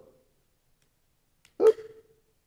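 Near silence, then near the end a man's short exclamation, 'oops'.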